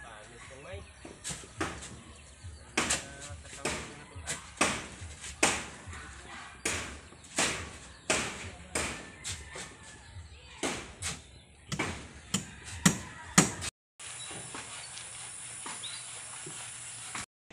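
Hammer blows on the timber frame of a house under construction: irregular sharp strikes, about one or two a second, each ringing briefly, the loudest just before the sound cuts off. After the cut comes a steady hiss.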